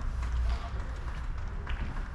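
Footsteps of padel players moving on the sand-filled artificial turf of the court, with a few faint taps, over a steady low rumble.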